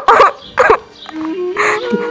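A woman crying, with two short falling wails near the start. A held background music note comes in about a second in and steps up in pitch.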